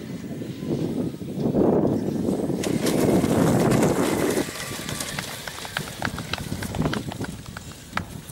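Large radio-controlled sailplane touching down and rolling across mown grass close by: a rough rushing rumble that swells about a second and a half in and dies away after about four and a half seconds, leaving a lower hiss.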